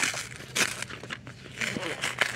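Hardcover notebooks scraping and rustling against each other as one is worked loose from a tightly packed stack, in a few short bursts.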